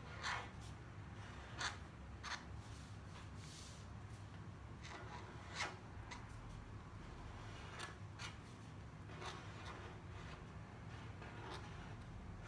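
Felt-tip pen writing on paper: short, irregular scratchy strokes as the letters are formed, faint, over a steady low hum.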